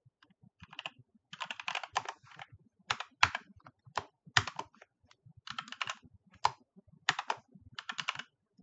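Typing on a computer keyboard: runs of quick keystrokes broken by short pauses.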